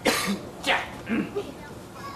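A person coughing, three coughs in about a second and a half, the first the loudest.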